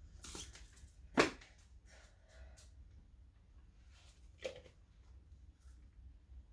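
Hands working potting mix into a small plastic pot: soft scraping and rustling of soil, with a sharp knock of the pot about a second in and a smaller knock about four and a half seconds in, over a faint low hum.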